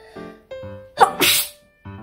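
A boy sneezes once, loudly, about a second in: a short voiced cry that drops in pitch and breaks into a hard burst of breath. Light piano music plays underneath.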